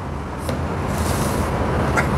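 A steady low rumble, like a motor vehicle going by, getting a little louder about half a second in. Over it are two or three brief, soft scratching hisses on paper.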